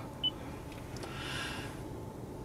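Quiet car cabin: one short, faint high beep about a quarter second in, then a soft hiss that swells and fades.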